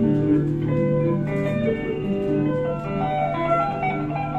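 Solo electric guitar played live: a steady low note sustains underneath while a line of single higher notes moves above it.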